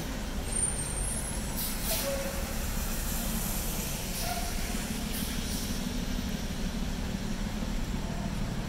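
City street traffic on wet pavement: a steady low engine hum from vehicles at an intersection, with a couple of brief swishes of tyres on the wet road about two and five seconds in.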